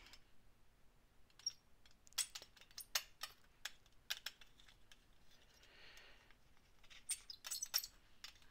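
Faint scattered light taps and clicks of a metal clay blade and a small tool against a work surface as a polymer clay piece is trimmed and reshaped, with a brief soft rubbing sound about six seconds in.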